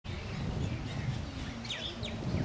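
Outdoor ambience of birds chirping, with a couple of quick falling chirps near the end, over a steady low background rumble.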